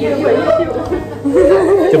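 Speech: two people chatting and joking, one voice wavering up and down in a drawn-out word in the second half.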